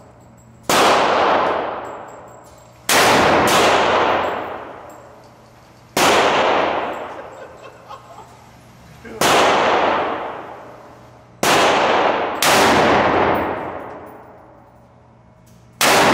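Rifle shots fired one at a time at an indoor range, eight in all at uneven intervals, each crack followed by a long echo that fades over about two seconds.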